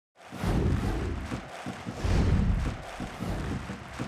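Highlights-show intro sting: produced music with deep bass booms, loudest about half a second in and again around two seconds in.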